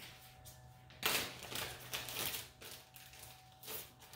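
A plastic bag being handled, crinkling and rustling in a burst about a second in that trails off over about a second, with a shorter rustle near the end, under a steady low hum.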